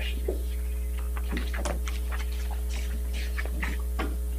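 Steady low electrical mains hum carried through the room's audio system, with faint scattered clicks and rustles over it.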